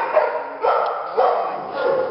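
Dog barking, three barks a little over half a second apart.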